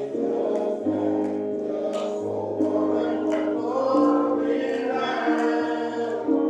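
Gospel music in church: a group of voices singing long held notes in chords, over low bass notes that change about every second.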